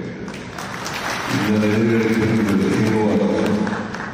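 Audience clapping breaks out shortly after the start and dies down near the end. A man's amplified voice carries on over it from about a second in.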